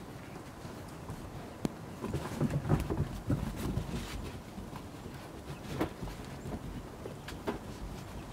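Puppies playing and wrestling: a sharp click about a second and a half in, then scuffling with short low play growls for a couple of seconds, and two brief yips near the end.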